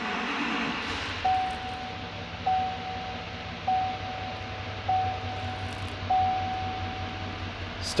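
2018 Chevrolet Silverado 3500's 6.6-litre L5P Duramax V8 diesel, heard from inside the cab, starting right up after a brief crank in the first second and then idling with a steady low rumble. A dashboard warning chime pings five times, about once every 1.2 seconds.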